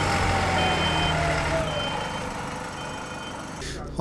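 City bus with a MAN 6.8-litre diesel engine running, while its reversing alarm beeps about once a second, each beep about half a second long. A whine slowly falls in pitch, and the engine fades toward the end.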